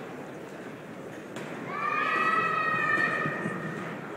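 Murmur of spectators in a hall, then a high-pitched voice calling out in one long, held cry lasting about two seconds, starting a little before the middle.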